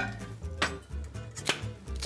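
Two short, sharp kitchen knocks about a second apart, from bowl and utensil handling at a countertop, over soft background music.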